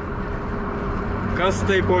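Steady engine drone and road noise inside a moving car's cabin.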